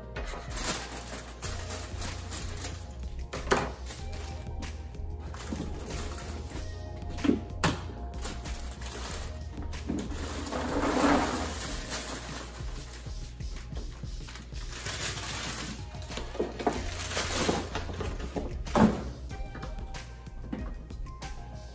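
Background music plays throughout, over a few sharp clunks of plastic cereal canisters and lids on a countertop and the rustle of a plastic bag of dry food, which is longest about ten seconds in.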